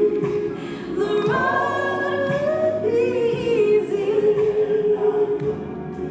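A woman singing a slow worship song solo into a handheld microphone, with long held notes.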